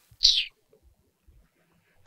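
A woman's short, high hiss through the teeth in annoyance, once, early on, followed by near silence.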